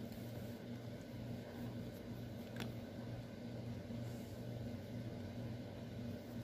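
Quiet room tone with a steady low hum, and a single faint tick about two and a half seconds in.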